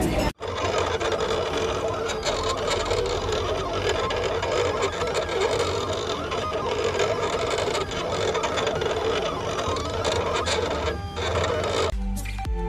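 Desktop electronic cutting machine (cutting plotter) cutting a sheet of printed stickers: its carriage and roller motors whir steadily as the blade works over the sheet.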